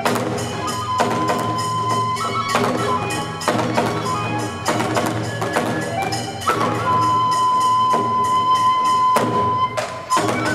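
Kagura music: a large taiko drum struck with sticks in an uneven rhythm, with bright ringing strikes typical of small hand cymbals, and a bamboo flute holding long high notes, one briefly near the start and a longer one from about two thirds of the way in.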